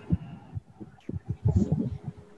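Irregular low thumps and rumbles over a video-call audio line, with a denser cluster in the second half.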